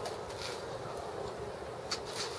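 Faint, steady crowd-and-stadium ambience with a few scattered small clicks and knocks; no music is playing yet.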